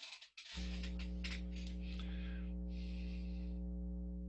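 A crackle, then a steady electrical hum about half a second in, a low buzz with a stack of even overtones that holds level. Two short bursts of hiss sound over it.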